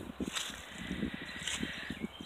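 A short pause in talk filled with faint outdoor background noise, with light rustling and a few soft clicks.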